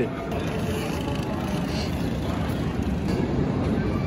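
Steady, dense drone of several dirt bike engines running together inside a large concrete hangar.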